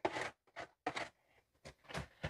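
A few faint scrapes and soft taps of a plastic spatula pushing chopped vegetables off a plate into a skillet and moving them around in the pan.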